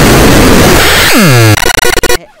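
Harsh, heavily distorted noise from digitally mangled cartoon audio, very loud throughout. About halfway through a sound drops steeply in pitch, then the noise breaks into choppy stutters near the end.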